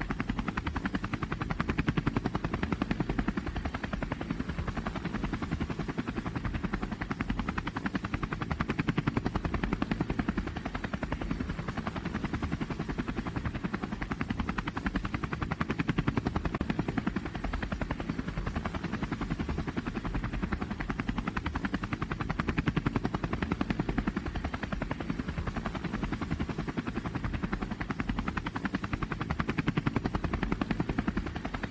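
DJI Phantom quadcopter's rotors heard through the onboard GoPro, a steady low rushing buzz with a rapid flutter, as the drone lifts off and climbs.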